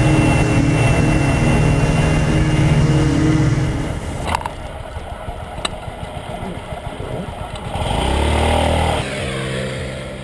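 2009 Honda CHF50 Metropolitan scooter's 49 cc four-stroke single running steadily at speed, then dropping to a quieter, slower running about four seconds in, with two sharp clicks. Near the end it picks up briefly, then settles to a lower, even note.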